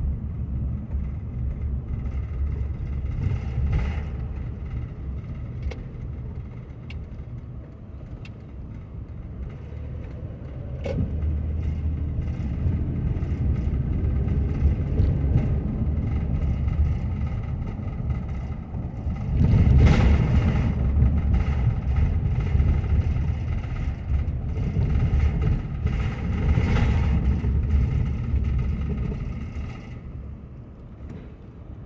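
Car driving on town streets: a steady low road-and-engine rumble that grows louder about twelve seconds in, with a stronger swell around twenty seconds in and a smaller one near the end.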